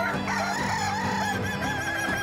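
Kukuak balenggek rooster crowing: one long crow whose pitch wavers up and down again and again, the stepped, tiered crow this breed is judged on.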